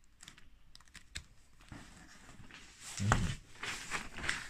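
Handling of a photo album's plastic picture sleeves: scattered small clicks and plastic rustling, with a louder thud and rustle about three seconds in.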